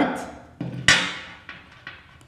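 A sharp click about a second in, with a fainter click just before it and a few light ticks after, from handling the flash bag's shoulder strap and its clip.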